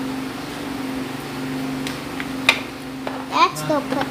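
Small plastic toy pieces being handled, with a sharp click about two and a half seconds in, over a steady low hum. A brief voice sound comes a little after three seconds.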